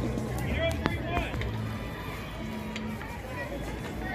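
Scattered voices and chatter from players and spectators at an outdoor softball field over a steady low background rumble, with a short call in the first second and a single sharp click about a second in.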